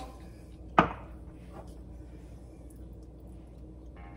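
Kitchenware being handled: one sharp knock of a glass jar or spoon against a hard surface about a second in, then a faint click, as jars of filling and a spoon are swapped at the counter.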